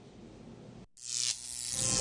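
An electric buzz with a steady hum swells up about a second in, after a brief moment of faint room tone and a short dropout. It is an edited sound effect for a glowing light bulb.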